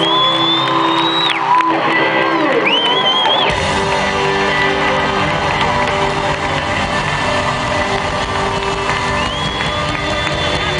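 A live rock band playing in an arena under a cheering crowd, with piercing whistles from the audience near the start, around three seconds in and near the end. The music fills out with a low bass about three and a half seconds in.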